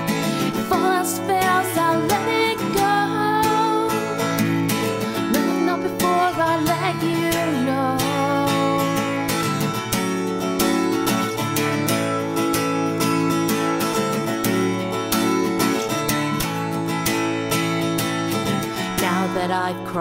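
Acoustic guitar strummed in a steady rhythm, with a woman singing over it for the first several seconds; then the guitar plays on alone until her voice comes back in near the end.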